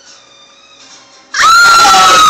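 After a quiet first second and a half, a sudden, very loud, high-pitched human scream breaks out and is held on one pitch.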